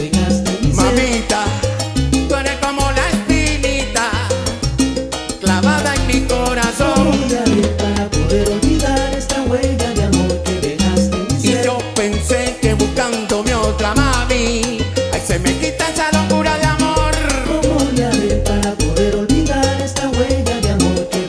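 Live salsa band playing at full volume: a pulsing bass line under dense Latin percussion from timbales and congas, with melodic lines above.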